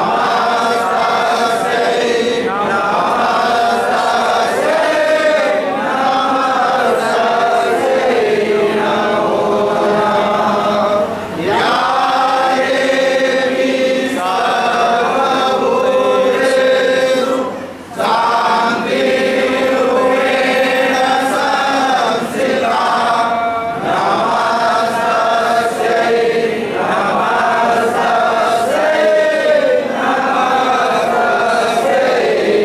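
Devotional aarti hymn chanted by a group of voices together, in long sung phrases with two short breaks, one a little past a third of the way in and another just past halfway.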